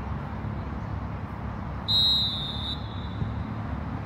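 A referee's whistle blown once in a single sharp, high blast lasting just under a second, about two seconds in, over a steady low background rumble.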